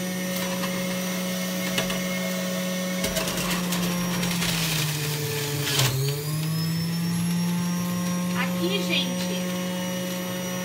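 Electric juicer's motor running steadily, then grinding as a whole lemon is forced through about three seconds in. The hum drops in pitch under the load just before six seconds, then picks back up to speed.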